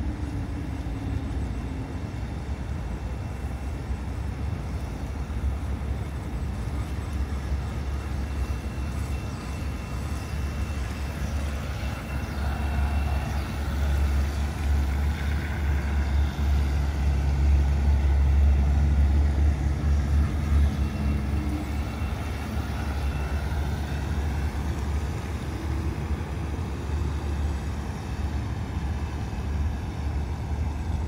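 Steady low outdoor rumble that swells in the middle and eases off again. Over it, a faint thin whine from the radio-controlled model boat's motor rises and falls in pitch as the boat runs past.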